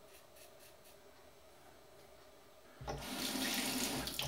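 Quiet at first, then about three seconds in a bathroom tap is turned on and water runs steadily into the sink.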